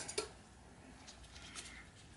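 Faint handling sounds of gloved hands taking up a raw prawn and a small knife over a steel bowl, with a couple of light rustles about a second in.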